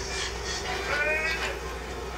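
A person's drawn-out, wavering voice from the show's soundtrack, about a second in, over a steady low hum.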